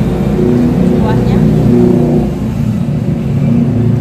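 A loud steady low hum with shifting pitched tones, and a woman's brief 'oh' about a second in.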